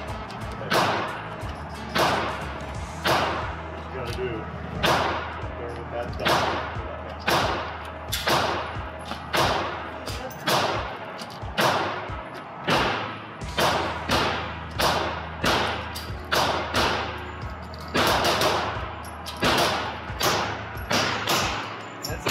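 Semi-automatic pistol fired shot after shot in an indoor range, roughly one to two shots a second with a short echo after each.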